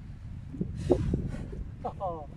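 Low wind rumble buffeting the microphone on an open golf course, with a short breathy puff about a second in and a man's voice starting up near the end.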